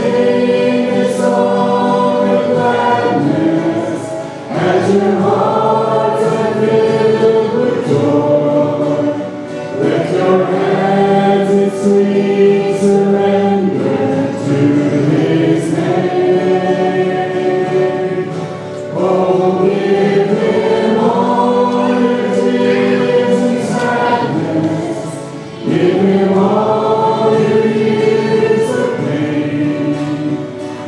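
Church praise team singing a hymn to acoustic guitar, with the congregation singing along, in sung phrases about five seconds long with short breaths between them.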